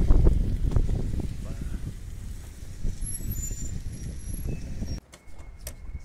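Outdoor street noise: a steady low rumble of wind on the microphone or traffic, with faint voices near the start. The sound drops off abruptly about five seconds in.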